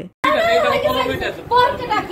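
Chatter: several people talking over one another, starting just after a split-second of silence at the very start.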